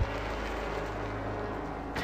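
Steady low hum with an even hiss, the quiet soundtrack of an old videotaped car commercial.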